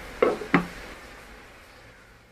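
Glass saucepan lid set down onto the rim of a saucepan: two sharp knocks about a third of a second apart, the second with a short ring.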